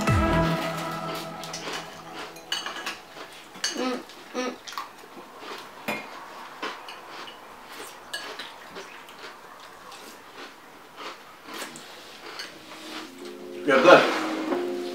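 Metal spoon clinking and scraping against a ceramic cereal bowl in scattered light clicks, as cereal is scooped and eaten. A music chord fades out in the first second or so.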